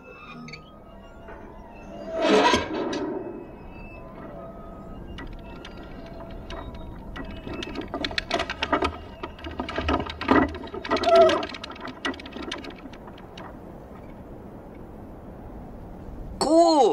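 Mechanical clattering and whirring sound effects: a loud swell about two seconds in, then a run of rapid clicks and rattles with steady tones from about seven to twelve seconds, fading off afterwards.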